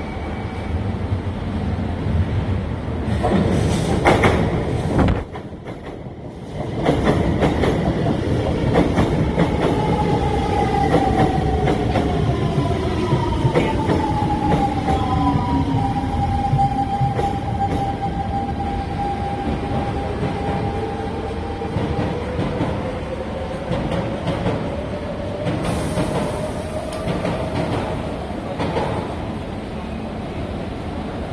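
SMRT metro train on elevated track: the rumble and clatter of the wheels, with the traction motors' whine falling in pitch as the train brakes into the station. A steady tone follows, and toward the end a whine rising in pitch as a train pulls away.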